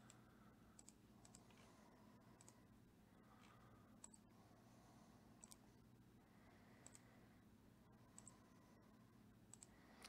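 Faint computer mouse clicks, several irregularly spaced clicks, some in quick pairs, over near-silent room tone: the 'Again!' button on an online list randomizer being clicked to re-shuffle the list.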